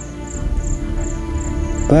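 Cricket chirping steadily, about three short high-pitched chirps a second, over a low background music bed.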